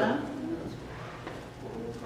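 A man's preaching voice trails off at the start, then a pause filled by a low steady room hum and faint, murmured voices.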